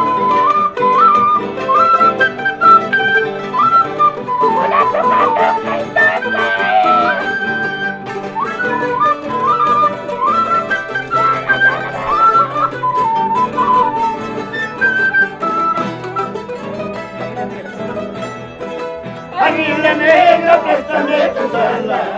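Andean folk music played live: a flute carries a stepped melody over plucked strings and guitar. Singing starts near the end.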